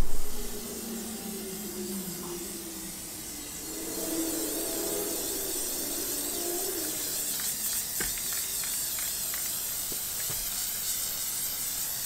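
Aerosol can of Plasti Dip rubber coating spraying steadily with a continuous hiss as a fifth coat goes onto a car's rear window glass. The hiss grows a little louder about four seconds in.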